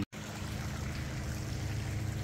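Steady outdoor background noise: an even hiss with a faint low hum underneath and no distinct events.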